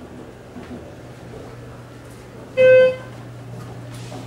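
A single short electronic chime from a Schindler elevator's fixtures: one clear, steady-pitched tone lasting about a third of a second, about two and a half seconds in, over a steady low hum in the cab.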